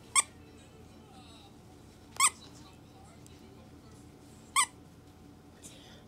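A squeaker in a plush dog toy squeezed three times, each a short, sharp squeak about two seconds apart.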